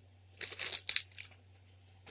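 Toy packaging crinkling as it is handled, a cluster of short crackles starting about half a second in and lasting about a second.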